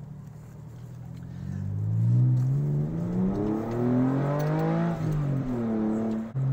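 Porsche 911 flat-six engine heard from inside the cabin, accelerating with the revs climbing steadily for about three seconds, then the revs drop near the end.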